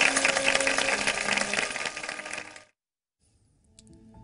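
Film soundtrack of dense metallic jingling and ringing over steady tones, which cuts off suddenly about two and a half seconds in. About a second of silence follows, then a faint sound swells near the end as the programme's title sting begins.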